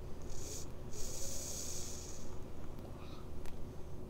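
A hissing draw on a vape, air pulled through its mouthpiece: a short pull, a brief break, then a longer pull of just over a second.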